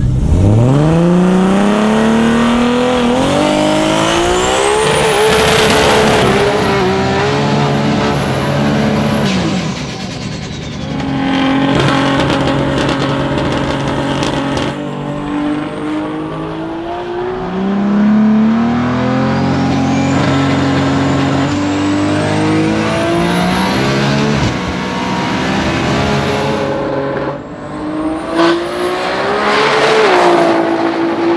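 Turbocharged 3.8-litre Ford Barra inline-six in an XW Falcon drag car running hard, its pitch climbing, dropping back and climbing again several times. A high whine rises alongside it.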